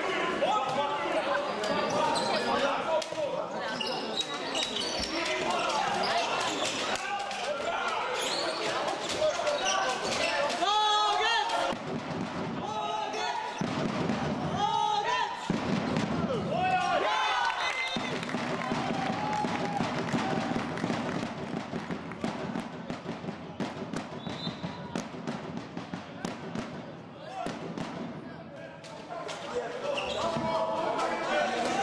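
A handball bouncing on a sports-hall floor during live play, with players' voices shouting and calling in the hall.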